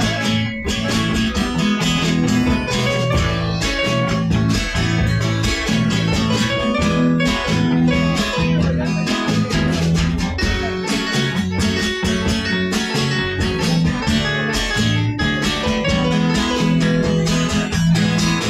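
Live band playing an instrumental passage: acoustic-electric guitar, electric bass and drum kit, with a steady beat.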